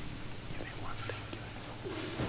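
Faint whispered speech over a steady hiss and low hum.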